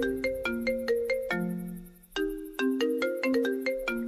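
Mobile phone ringtone: a short melodic phrase of bright, chime-like notes, played twice with a brief break about two seconds in.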